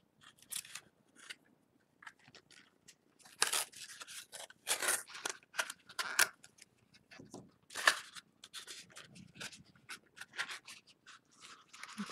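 A string of short, irregular rasping and tearing sounds from hand work with paper and tape, the strongest about three and a half, five, six and eight seconds in.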